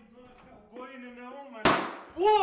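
A single sharp, loud bang about a second and a half in, after a brief pitched voice-like sound.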